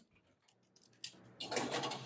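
After about a second of near silence, faint clatter and scraping as a metal baking tray is slid into an oven.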